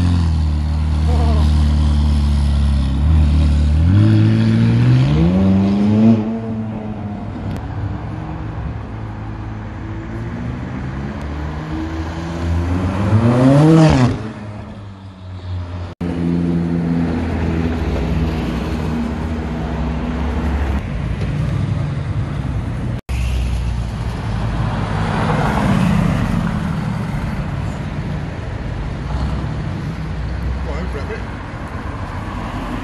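Supercar engines on a street: a McLaren 570's twin-turbo V8 idling, then revved twice with rising pitch. After a cut, a Lamborghini Huracán's V10 runs as it drives by, and after another cut a Mercedes-AMG GT roadster's V8 pulls away.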